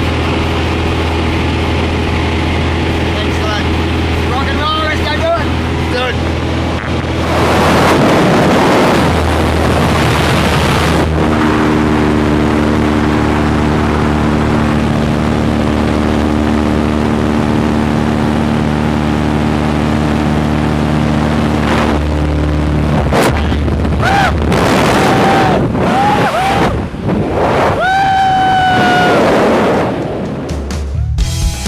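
Jump plane's engine droning steadily inside the cabin; about seven seconds in a loud rush of wind noise comes in as the door opens. Past twenty seconds the steady engine tones drop away into rushing freefall wind, with whooping yells in the last few seconds.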